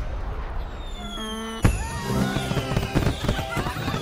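Fireworks sound effect over music. A falling whistle and a quick rising run of chime tones lead to a sharp bang about one and a half seconds in, followed by rapid crackling bursts.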